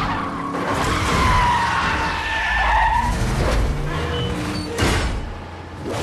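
Movie sound-effects mix of a vehicle chase: truck and car engines running under tyres squealing in long gliding tones, with a sharp hit near the end.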